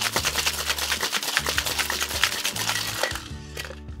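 Ice rattling hard inside a metal cocktail shaker as a drink is shaken, a fast, dense run of clicks that stops about three and a half seconds in.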